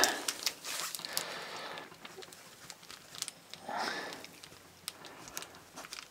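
Soft crinkling and scratching of a plastic blind-box pouch as a small plastic scalpel tool picks at it without cutting through, with a few scattered clicks and two or three breaths through the nose.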